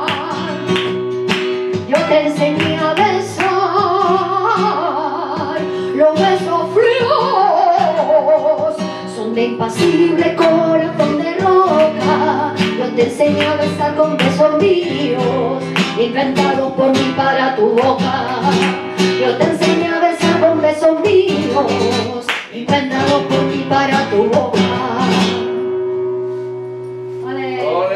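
A woman singing flamenco in long, wavering melismatic lines, accompanied by a flamenco guitar, with sharp rhythmic hand claps (palmas) throughout.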